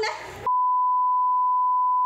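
A single steady beep tone cuts in about half a second in and fully replaces the audio: a broadcast censor bleep masking the voices on the clip. Just before it, a few words of voices are heard.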